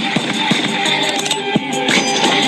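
A song with drum hits and guitar playing through small Logitech desktop satellite speakers with the bass knob turned down, so the deep low end is gone and the sound is thin.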